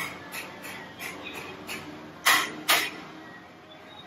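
Steel ladle clinking against stainless steel curry pots and a steel compartment plate as curry is served: a string of light ringing metal taps, with two louder clanks a little over two seconds in.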